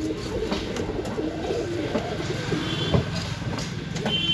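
A loft of domestic pigeons cooing, with many overlapping low warbling calls. There is one sharp knock about three seconds in.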